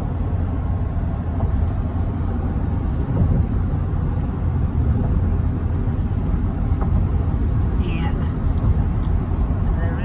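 Steady low road rumble of a car driving at highway speed, heard from inside the cabin: tyre and engine noise with no sudden events.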